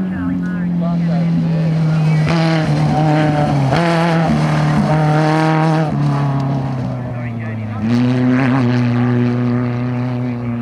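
Super 1650 off-road race buggy engine running hard at a steady high pitch as the buggy drives past. The note drops a little twice and then climbs again near the end, following the throttle and gearing.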